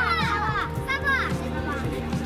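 Several children's high voices chattering and calling out over background music with a steady beat.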